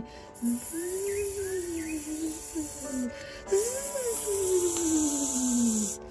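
Snake hissing, two long hisses, the second starting about halfway through, over soft music with a single tone sliding up and down.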